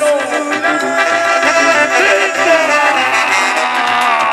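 Mexican banda music: a brass band with trombones and trumpets playing, holding long notes.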